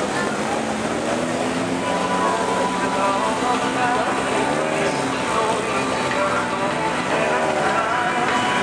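Several four-cylinder autocross race car engines running and revving as the pack drives through a dirt-track bend, their pitch rising and falling as the cars lift and accelerate, overlapping one another.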